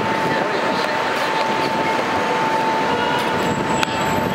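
Loud, steady background din with indistinct overlapping voices and a thin, steady high-pitched tone running under it.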